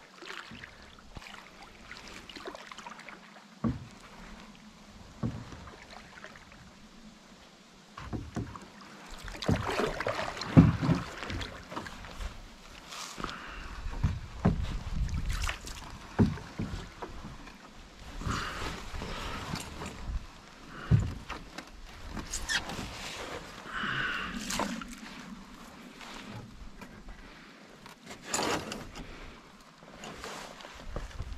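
A loaded canoe paddled into shore: a few sharp knocks of the paddle against the hull at first, then louder irregular thumps and scraping as the hull runs up onto the bank and the boat and gear are shifted about.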